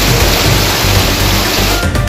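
Loud, steady rush of fast-flowing floodwater, with background music and a regular beat under it. The water noise cuts off just before the end, leaving only the music.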